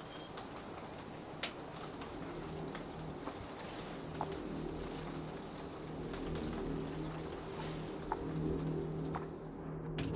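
Trailer soundtrack: a steady hiss scattered with faint ticks, like rain, under a low droning tone that builds in from about four seconds in.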